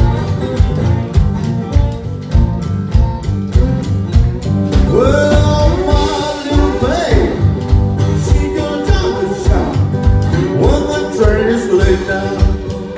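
Live blues band playing: an acoustic guitar strummed over a steady, rhythmic low beat. A male singer comes in about five seconds in.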